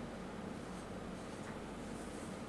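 Faint rustling of loose paper sheets being picked up and shuffled, a few soft rustles over a steady low room hum.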